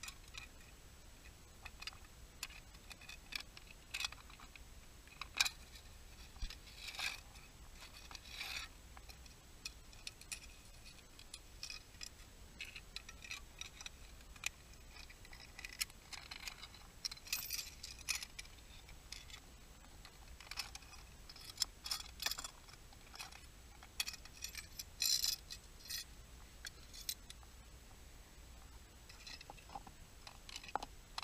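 Irregular light clicks and short scrapes of hard objects against rock and broken shell, as a hand works a small metal tool into a rock crevice.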